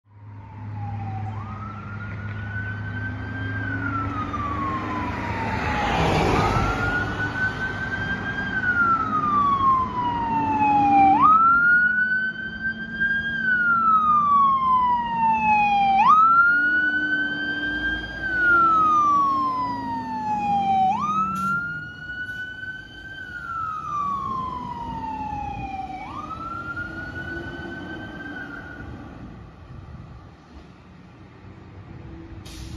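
Fire engine siren wailing: each cycle rises quickly in pitch and then falls slowly, repeating about every five seconds. It grows louder toward the middle and fades near the end, with a brief loud rush of noise about six seconds in.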